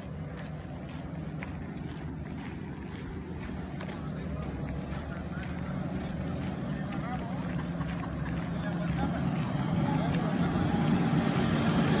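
A steady low rumble that grows gradually louder, with faint soft ticks on top.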